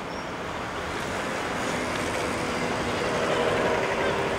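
Steady road-traffic noise that grows slowly louder, with a faint engine-like hum coming in near the end.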